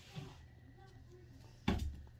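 A single short thump near the end: a chinchilla landing on the floor from a high jump, with faint scuffling before it.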